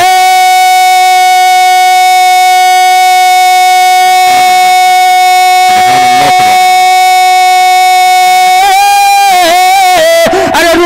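A man singing one long held note of devotional Urdu verse into a PA microphone. The pitch stays steady for about nine seconds, then wavers into a vocal flourish near the end.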